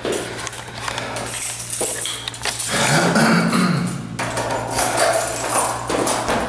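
Keys jingling and rustling as an apartment door is unlocked, over a steady low hum. A short, low pitched vocal sound rises and falls about halfway through.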